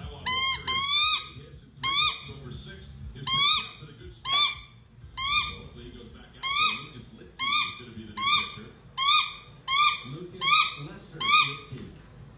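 A rubber squeaky ball squeaked over and over by a large dog chewing on it, about thirteen high-pitched squeaks. They start with a quick pair, then fall into a steady rhythm of a little more than one a second.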